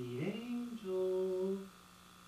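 A person humming a short wordless phrase: the pitch slides up into a held note, moves to a second held note, and stops about three-quarters of the way through. A faint steady electrical buzz runs underneath.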